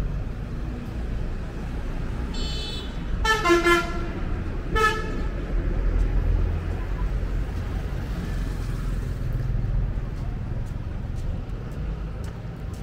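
Vehicle horns sounding in three short toots between about two and five seconds in, the middle one the loudest. Under them is a steady low rumble of road traffic.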